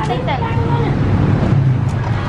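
A voice speaks briefly at the start, over a steady low rumble of passing road traffic.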